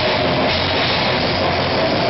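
Live metal band playing loud and without a break, heard from beside the drum kit: drums and cymbals being struck fast in a dense mix with the rest of the band.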